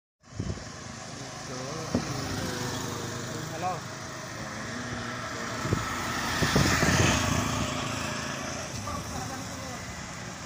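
Road traffic on a wet road: motorcycle engines and tyre hiss, with one vehicle passing close and loudest about seven seconds in.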